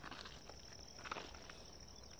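Faint insects calling in one steady high-pitched drone, with a few soft footsteps on asphalt shortly after the start and again about a second in.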